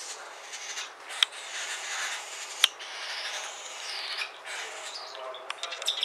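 Cockatiel chick's raspy, hissing food-begging while being spoon-fed hand-feeding formula, with sharp clicks about a second in and, loudest, about two and a half seconds in.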